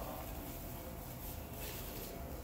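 Faint rustling of plastic stretch film as it is twisted and tucked to tie it off at the base of a pallet.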